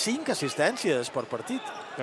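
People's voices talking in a large arena hall, with a few short sharp knocks of a basketball bouncing on the court.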